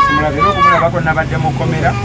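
A man talking, with a low steady background hum.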